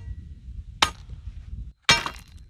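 Steel post rammer striking the stones packed around a gate post twice, about a second apart, each blow a sharp metallic clang that rings briefly: the stones being rammed home to compact them around the post.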